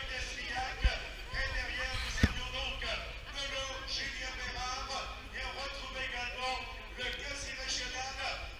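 A race announcer's commentary over a public-address loudspeaker, the words indistinct. Two sharp low thumps cut through it about one and two seconds in.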